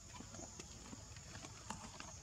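Faint, irregular small clicks and taps from a macaque handling and drinking from a paper juice carton, the loudest tap near the end, over a steady high hiss.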